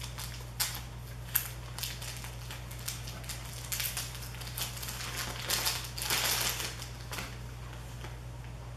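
A plastic bag crinkles and crackles in irregular bursts as a camera battery is unwrapped by hand, over a low steady hum.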